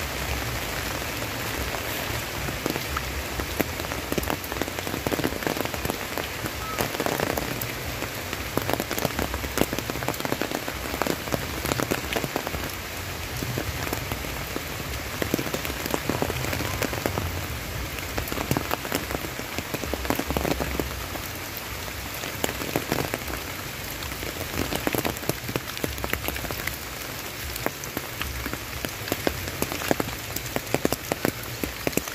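Steady rain, with many close, sharp raindrop hits scattered through it.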